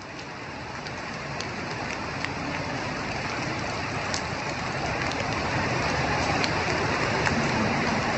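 Rain falling steadily, an even hiss with scattered sharp drop ticks, growing steadily louder as it fades in.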